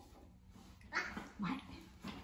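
A toddler's short, breathy vocal sound about a second in, with quiet room tone around it.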